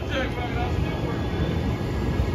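Passenger railcars rolling past at close range, a steady low rumble of wheels on rails. A person's voice is heard briefly at the start.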